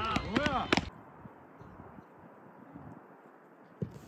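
Several people shouting, with a few sharp knocks among the voices, cut off abruptly about a second in. Then faint, steady outdoor background noise with one dull thump near the end.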